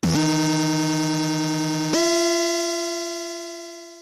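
A short synthesizer music interlude: one long held note that slides briefly down into pitch at the start, then jumps to a note an octave higher about two seconds in and fades away near the end.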